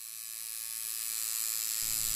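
Recording hiss, high and even, fading in from silence and growing steadily louder, with a low steady hum joining near the end. This is the noise floor of a microphone recording before anyone speaks.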